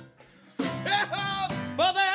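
A man singing a gospel-style song with vibrato on held notes over instrumental accompaniment. After a brief lull, a sung phrase starts about half a second in, and another begins near the end.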